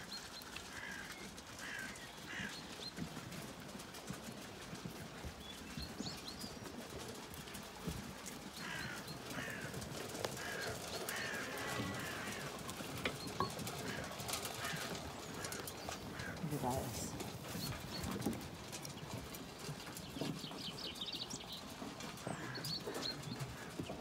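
Zwartbles sheep and lambs jostling and eating at a feed trough: a steady run of small knocks, shuffles and rustles from hooves, wool and the trough, with small birds chirping in the background.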